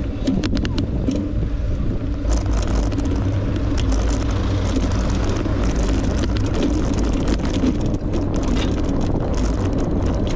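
Riding noise from a bicycle-mounted camera: a steady wind rumble on the microphone and tyre noise over rough, patched asphalt. Frequent small clicks and rattles come from the bike jolting over the bumps.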